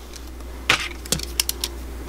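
A few small, sharp metal clicks close together in the middle, from jewellery pliers being handled as they are brought up to the wire earring.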